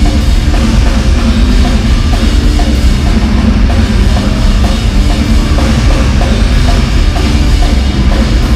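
A live rock band playing loud, heard up close from the side of the stage: a drum kit driving the beat under electric guitar.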